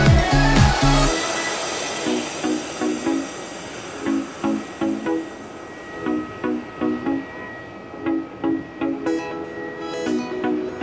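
Background electronic music: a heavy bass beat drops out about a second in, leaving a repeating pattern of short plucked notes, with high percussion coming back near the end.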